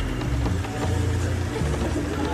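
Instrumental stretch of a hip-hop track: deep, sustained bass notes that change every half second or so, with a melody above them and no rapping.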